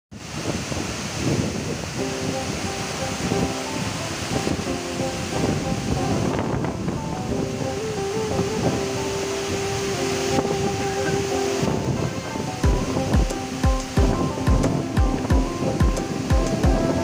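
Waterfall rushing steadily, with background music laid over it. Sustained melodic notes come in about two seconds in, and a steady low drum beat of about two strokes a second joins near the end.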